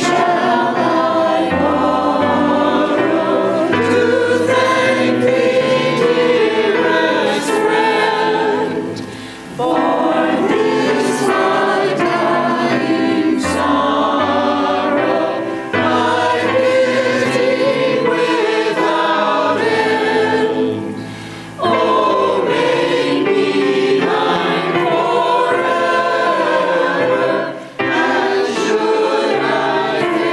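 A church choir of mixed men's and women's voices singing an anthem. The singing breaks off briefly between phrases three times.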